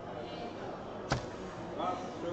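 A soft-tip dart striking the plastic segments of an electronic dartboard: one sharp click about a second in.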